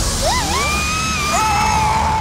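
Cartoon characters screaming in long, gliding yells, two voices overlapping midway, over a steady low rumble and trailer music.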